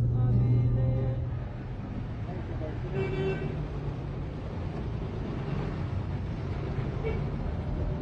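City street traffic with cars going by, and a short car horn toot about three seconds in.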